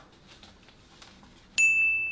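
A single bright chime-like ding sound effect strikes suddenly about one and a half seconds in and holds a steady high tone for about half a second, after faint handling rustles as the goggles are pulled on.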